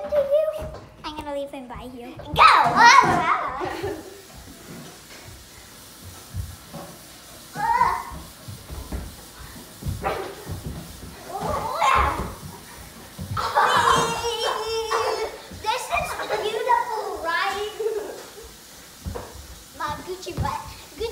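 Two children shrieking, shouting and laughing in excited bursts as they play-fight, with scattered soft thumps and scuffling beneath.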